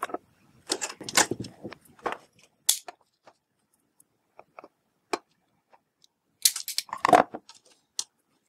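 A handheld wire stripper and insulated wire being worked by hand: scattered light clicks and rustles, with a louder burst of clicking and scraping near the end.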